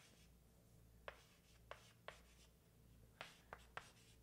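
Chalk writing on a blackboard: about five faint, sharp ticks and short scrapes, spaced irregularly, as letters are written.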